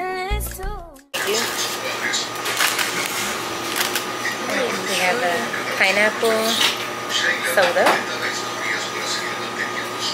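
Background music that cuts off suddenly about a second in, then the ambience of a small shop: a steady machine hum under indistinct voices and handling noise.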